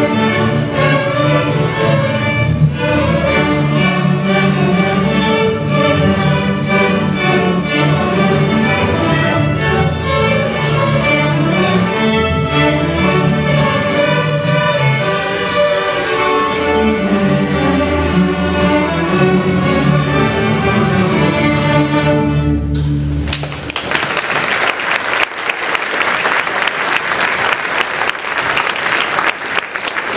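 An elementary school string orchestra of violins, cellos and basses playing a piece together. The piece ends about three-quarters of the way through, and audience applause follows.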